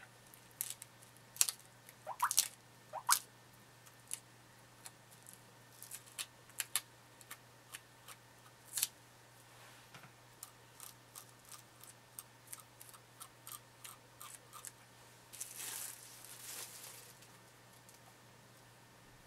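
Wire wrinkle-making finishing tool scratching and jabbing across plastic wrap laid over soft clay: a run of short crinkly scratches and squeaks, at irregular intervals. Near the end, a longer crinkling rustle of the plastic wrap as it is pulled off the clay.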